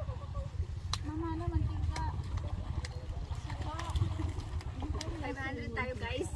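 Voices of several people talking in the background over a steady low rumble, with one sharp click about a second in.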